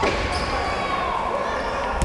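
Basketball game sounds in a sports hall: a basketball bouncing on the hardwood court at the start, with players' voices and court noise echoing in the hall.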